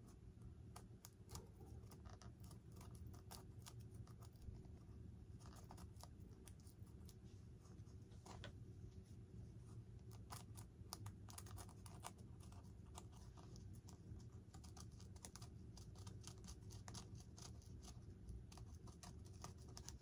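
Faint, irregular small clicks and scratches of a hobby knife cutting and picking out little bits of foam from a model jet's tail fin, deepening a recess for an LED light.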